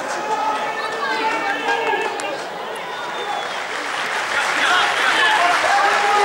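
Several men's voices shouting and calling out at once on a rugby pitch, growing louder near the end.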